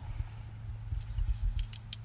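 Stacked 3D-printed plastic face shield frames being handled, with a few light plastic clicks in the second half over a low rumble.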